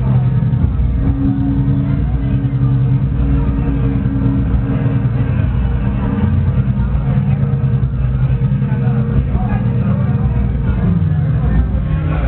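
Detroit electro played loud over a club sound system, with held bass synth notes that step to new pitches every second or so.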